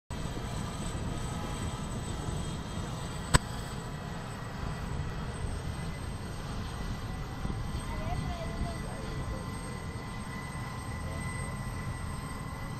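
Sikorsky CH-53 Sea Stallion helicopter's twin turboshaft engines running on the ground: a steady low rumble with a thin, constant high whine. A single sharp click about three seconds in.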